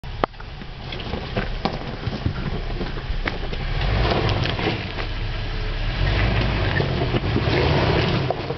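Jeep Wrangler engine running at low revs while it crawls over loose rock, growing louder as it comes closer. Scattered sharp clicks and crunches of stones under the tyres.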